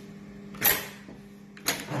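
Juki AMS-224C programmable pattern sewing machine at standby with a faint steady hum. A short, sharp hiss-like burst comes about a third of the way in and a click near the end, as the template jig and work clamp are handled.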